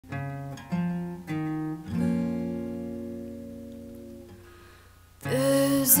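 Song intro on acoustic guitar: four plucked chords a little over half a second apart, the last left ringing and fading away. A singing voice comes in near the end.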